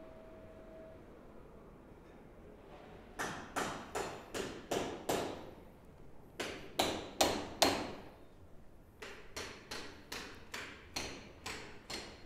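Repeated sharp knocks, hammer-like, in three runs starting about three seconds in, about two or three blows a second; the middle run of four is the loudest.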